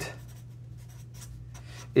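Felt-tip marker writing on paper in faint, scratchy strokes over a steady low hum.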